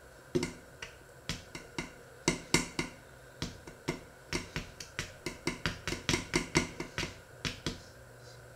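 A utensil clinking and tapping against a stainless steel mixing bowl while flour is stirred: sharp metallic clicks, a few scattered ones at first, then a quicker run of about three or four a second in the second half.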